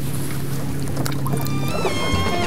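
Steady low hum of a boat's idling engine, with background music coming in about a second and a half in.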